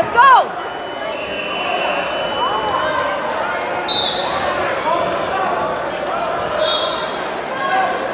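Echoing crowd noise in a busy gym during wrestling matches: spectators' chatter and shouts, with a steady high tone lasting about two seconds and a couple of short high tones later.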